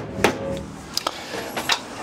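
Hammer striking a chisel wedged under an old extractor vent cover to loosen it from timber weatherboards: four sharp knocks at uneven intervals.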